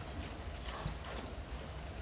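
Microphone handling noise: faint rustling with a few light, irregular knocks as a clip-on microphone and its pack are being fitted, over a low hum.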